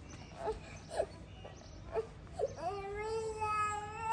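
Toddler crying: a few short whimpering sobs, then a long drawn-out wail from about two and a half seconds in.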